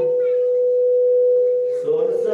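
A steady, pure, ringing tone from the temple's sound system, held for nearly two seconds after the chanting voice stops and cutting off just before the chant resumes: microphone feedback ringing at the pitch of the sung note.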